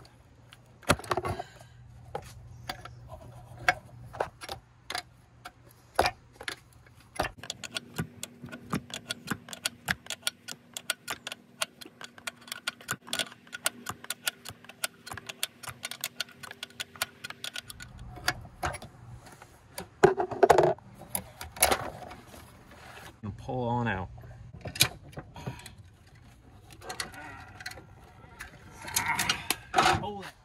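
A wrench clicking rapidly and irregularly as it works a nut on a brake master cylinder, with a few short vocal sounds in the last third.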